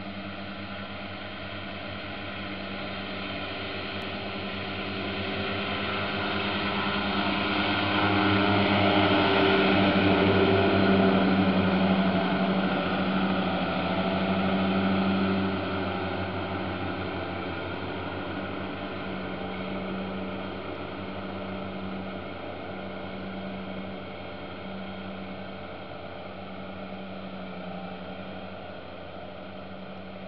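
Krone self-propelled swath mower running under load while mowing, a steady engine hum with a rushing mechanical noise over it. It grows louder as the machine passes close, loudest from about 8 to 15 seconds in, then fades as it moves away.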